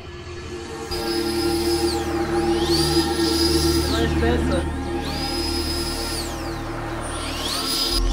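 Electric ducted fan (64 mm FMS jet fan) on an RC buggy whining as the throttle is worked: the pitch rises quickly to a high steady whine, holds for about a second, then winds down, about four times, over background music.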